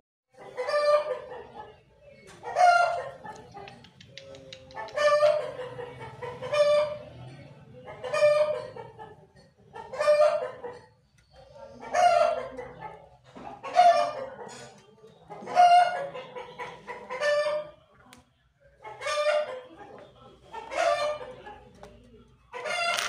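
A francolin (titar) calling: one loud call phrase repeated about every two seconds, a dozen times in a row.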